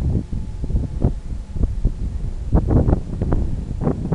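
Wind buffeting the microphone in irregular gusts, a low rumbling noise with the strongest bursts between about two and a half and four seconds in.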